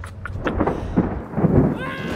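A thunder crack and rumble that builds about half a second in and is loudest around one and one and a half seconds, likely a thunder sound effect laid under an edited-in lightning strike. A few high chirping glides come in near the end.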